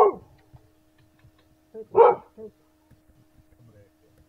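Dog barking: one bark right at the start and a louder one about two seconds in, with a couple of shorter barks around it. A steady low electrical hum runs underneath.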